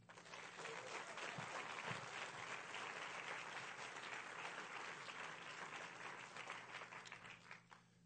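Audience applauding. The clapping builds over the first couple of seconds, holds steady, and dies away near the end.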